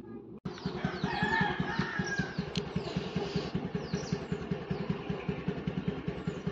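A scooter's small single-cylinder engine idling with an even, rapid putter, left running to warm up because it has been giving trouble. Small birds chirp over it, and a rooster crows about a second in.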